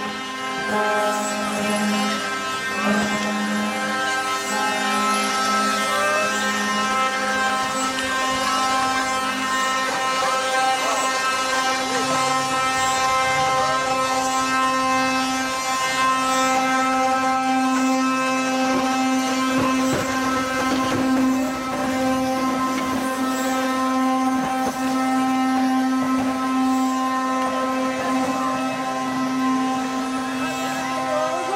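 Wooden axles of ox carts singing as the wheels turn: a continuous droning wail of several overlapping pitches, steady with small shifts in pitch.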